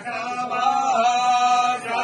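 Male priests chanting mantras during temple puja, their voices held on long, steady sung notes with slight dips in pitch.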